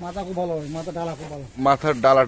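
A man's voice speaking: one long drawn-out sound for about a second and a half, then a few quick syllables.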